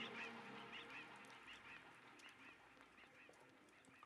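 Near silence, with faint short calls repeating and fading away.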